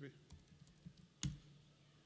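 Computer keyboard being typed on in a few faint key clicks, with one louder keystroke just past a second in.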